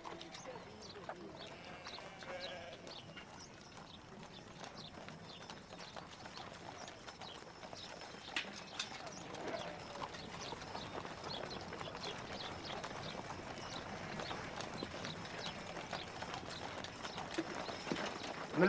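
Hooves clopping among livestock, with faint voices in the background, growing slowly louder toward the end.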